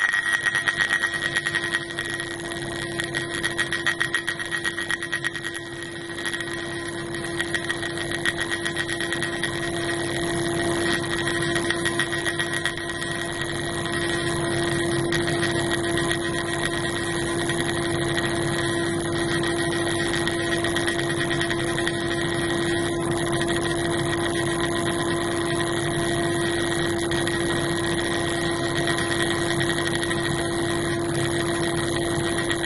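Pulsed laser ablation of a gold target under water: a steady buzz with a fine, rapid crackle as the laser pulses strike the metal and throw off gold nanoparticles. It grows slightly louder and more even about halfway through.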